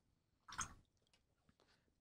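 Near silence: room tone, with one faint, brief sound about half a second in.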